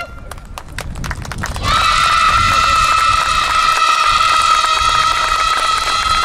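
A girl's long, high held vocal call into a microphone over the stage PA, sustained on one pitch for about five seconds and starting about two seconds in. Scattered clicks come before it.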